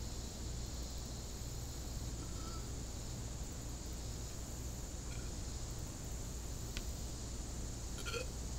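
Steady high-pitched insect chorus, crickets or similar summer insects, over a low steady hum, with one faint click near the end.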